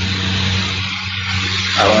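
Steady, loud hiss with a low hum underneath: the background noise of a poor-quality recording, with no other sound in the pause. A voice begins right at the end.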